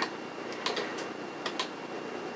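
A few light clicks from computer controls being worked, over faint room hiss. They come in two small groups, about two-thirds of a second in and again around a second and a half.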